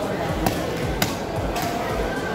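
Two sharp knocks about half a second apart, a knife blade striking the wooden log chopping block while a tuna loin is cut, over background market chatter.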